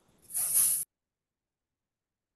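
A short breathy hiss lasting about half a second, sitting high and about as loud as the speech around it, then the sound cuts out abruptly to dead silence.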